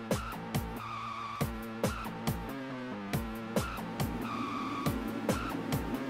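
Acid techno playing in a DJ mix: a steady kick drum at a little over two beats a second under sustained synth tones.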